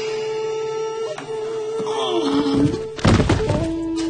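Dramatic film score with long held notes, and a single heavy thud about three seconds in.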